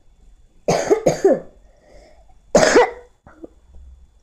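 A person coughing three times: two coughs close together about a second in, then a third about a second and a half later.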